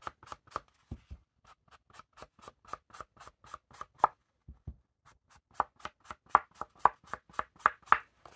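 Ink blending tool's sponge pad dabbed quickly and repeatedly against the deckled edge of a paper card panel, applying Distress Ink to age the edges. It is a run of light, even taps, about four or five a second, with a short pause a little after four seconds in.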